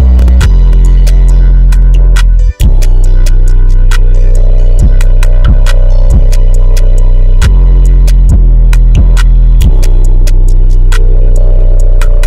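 Pluggnb-style beat playing back, led by a loud, booming 808 bass line that drops out for a split second about two and a half seconds in. Steady ticking hi-hats and electric-piano keys run over it.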